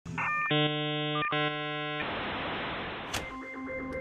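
Electronic intro sting: a short synth blip, then a held synth chord that gives way to a hiss of noise, which fades. A sharp click comes near the end.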